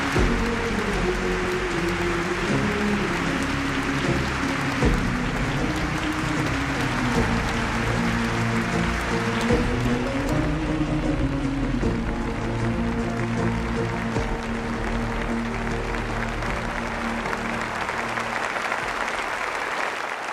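TV talk show's closing theme music of slow sustained chords, with applause mixed in throughout.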